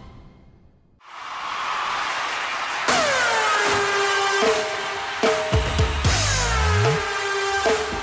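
Electronic stage music starting up after a brief lull: a swelling wash of noise, then from about three seconds in repeated falling synth sweeps over heavy bass and drum kit hits.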